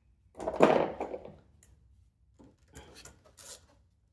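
Metal hand tools and small parts clattering and scraping as a wrench is set onto an engine fitting: one loud rattling clatter about half a second in, then lighter clicks and scrapes near the end.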